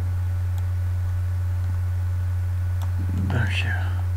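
A steady low electrical hum on the recording, with a few faint mouse clicks, and a brief breathy whisper of a voice about three seconds in.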